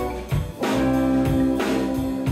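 Live band playing a song: drums hitting a steady beat about twice a second under held chords.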